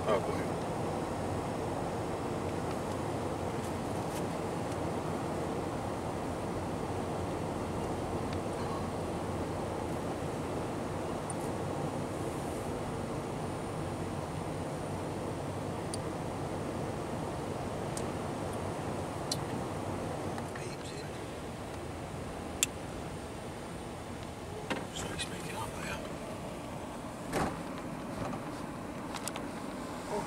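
Road noise heard inside a moving car's cabin on a snow-covered road: a steady low rumble of tyres and engine, easing slightly about two-thirds of the way through. A few sharp clicks come near the end.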